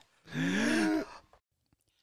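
A man's exaggerated deep breath drawn in with his voice, lasting under a second, its pitch rising and then falling.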